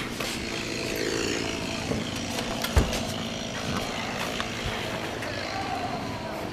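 An engine running steadily, with one dull thump about three seconds in.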